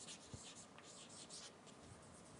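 Faint scratching of writing on a board, short strokes one after another.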